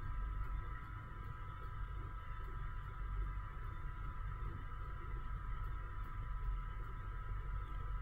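Steady low hum with a faint, steady high-pitched whine underneath; background noise with no distinct event.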